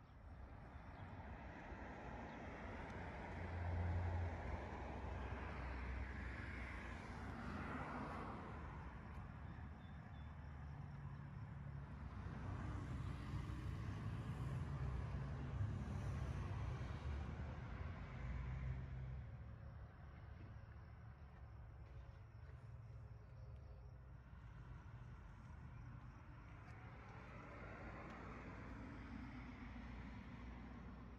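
Faint outdoor background: a low rumble of distant road traffic that swells and fades.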